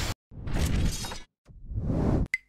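Two swelling bursts of crashing, rushing noise: sound effects of an animated logo intro. The first builds and fades within about a second; the second starts after a short gap and grows louder toward the end.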